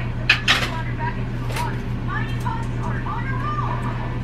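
Two sharp clicks close together near the start, then a faint voice in the background over a steady low hum.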